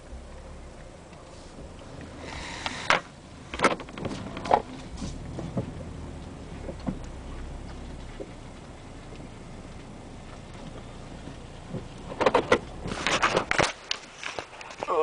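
Knocks and rubbing of a handheld camera being moved about a car's interior over a low steady rumble, with a few sharp knocks in the first half and a burst of handling knocks near the end.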